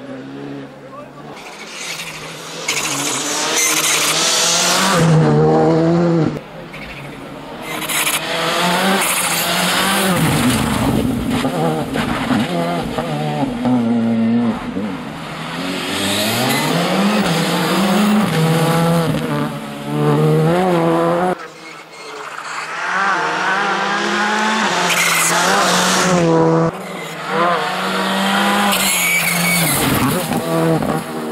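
Škoda Fabia rally car's engine revving hard, its pitch climbing and dropping again and again through gear changes and throttle lifts. There are sudden dips in the sound about six, twenty-one and twenty-six seconds in, and a hiss of tyres and road spray at the louder moments.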